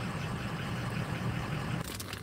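Car engine idling, a steady low hum heard from inside the cabin, with a few brief clicks near the end.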